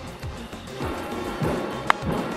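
Ballpark ambience with music playing. Near the end comes one sharp crack of a baseball bat meeting the ball, hit on a line drive.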